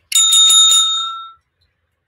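A bell ringing, a quick trill of strikes lasting just over a second and fading out, played as a sound effect marking the start of a new quiz round.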